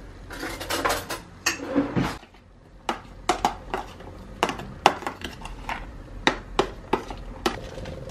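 Metal spoon clinking and scraping against a plastic tub as raw shrimp are stirred with seasoning: a string of irregular light clicks.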